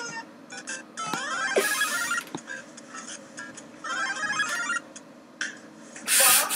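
Short electronic music phrases from a clip playing back on the computer. A rising note leads into a pitched phrase about a second in, overlapped by a brief hiss, and a second short phrase comes about four seconds in.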